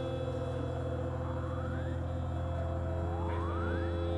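Experimental synthesizer drone music: a steady low hum under held mid tones, with rising pitch sweeps about a second in and again near the end.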